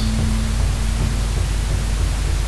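Steady hiss under soft background music, whose held low note fades out about one and a half seconds in.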